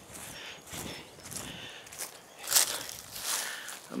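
Soft rustling and a few light scuffs, as of a person shifting on grass and dry leaves.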